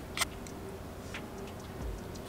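Quiet room tone with two faint short clicks from eating yogurt with a plastic spoon out of a plastic cup.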